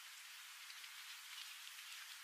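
Faint steady hiss with a few very faint ticks. There is no loud horn clash.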